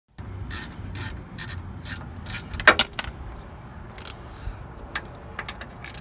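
Metal tool work on a car's brake caliper: a run of short metallic clicks, about two a second, then two louder knocks about halfway through, followed by a few scattered clicks.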